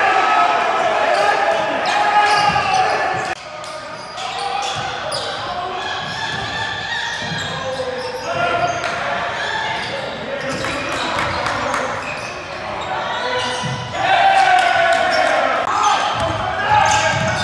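Live game sound from a gym: a basketball bouncing on the court amid players and spectators calling out, with no words clear, in a large echoing hall.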